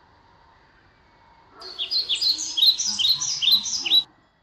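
A small bird chirping: a quick run of short, high chirps, each falling in pitch, about four a second, starting about a second and a half in over a faint outdoor hiss.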